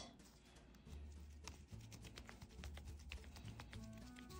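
Near silence: faint, irregular clicks and taps from hands kneading and rolling a lump of air-dry clay, starting about a second in, over faint background music.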